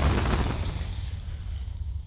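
Fiery explosion sound effect for a logo animation, a deep rumble that fades steadily away.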